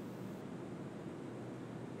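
Faint, steady hiss of background noise, with no distinct events.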